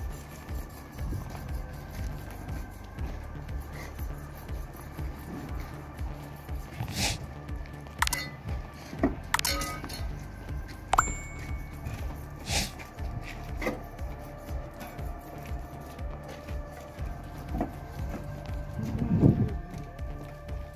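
Background music with a steady beat, with a few sharp clinks around the middle.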